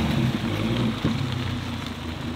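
Dodge Viper's V10 engine running at low speed as the car rolls away, a steady low note that fades slightly as it pulls off.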